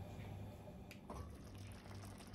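Faint simmering of a seafood paella in a lidded pan on a gas hob, with a small click about a second in.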